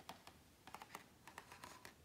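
A glossy page of a large hardcover book being turned by hand, faint, with a scatter of small crackles and ticks as the paper bends over and is laid flat.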